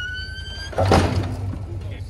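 A high, steady squeal, rising slightly and stopping just under a second in, is cut off by a heavy thud and rumble as the quad's rear wheels drop off the edge of the trailer deck onto the ground, the blow that cracks the trailer's diamond-plate fender.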